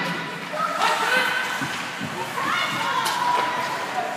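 Rink sound of a youth ice hockey game: spectators' voices calling out with rising shouts, and a couple of sharp knocks from the play on the ice.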